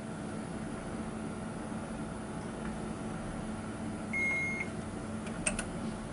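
A single electronic beep, about half a second long, roughly four seconds in, from the Mitutoyo CMM's controls as the operator works its handheld control unit, over a steady machine hum. Two quick clicks follow near the end.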